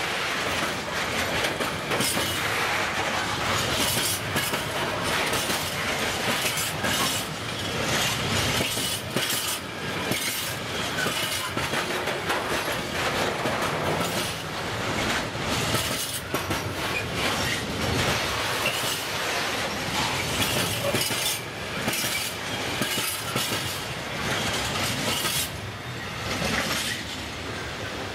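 Container freight wagons rolling past at speed, their steel wheels clattering over rail joints in a steady clickety-clack. The last wagons go by and the sound eases slightly near the end as the train draws away.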